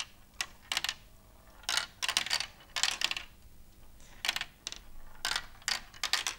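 Marbles running down a Galt Super Marble Run's plastic track, giving a string of sharp clicks and clatters at uneven intervals as they knock through the chutes and pieces.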